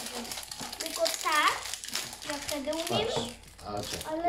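Thin plastic wrap crinkling and tearing as it is peeled by hand off small cardboard toy boxes.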